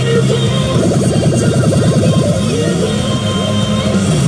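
Music and effect sounds from a Daiichi P Hyakka Ryoran Gohoushi pachinko machine during an on-screen feature effect, with a quick run of rising sweeps in the first half over steady held tones.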